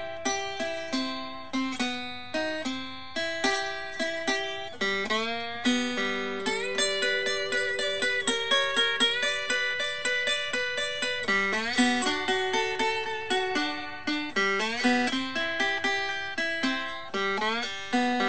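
Three-string acoustic cigar box guitar in open G major tuning (G B D) on high, light strings, played with a bone slide: a steady run of plucked notes with slides gliding between pitches, a blues lead lick.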